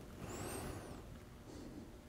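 Quiet room tone with faint, high, rising-and-falling squeaks about half a second in.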